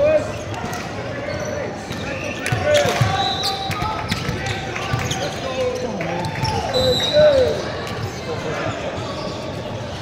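Echoing sports-hall ambience on a volleyball court: athletic shoes squeak against the court floor, with scattered voices of players and spectators.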